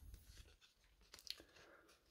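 Near silence, with faint rustles and a brief scrape of cardboard trading cards being slid from the front to the back of a hand-held stack, a little past a second in.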